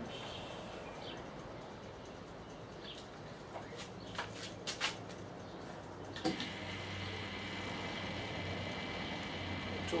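A few sharp clicks, then about six seconds in a thump as two microwave-oven transformers in parallel are switched on, followed by a steady mains hum with a faint higher whine as they drive fluorescent tubes under water at high voltage.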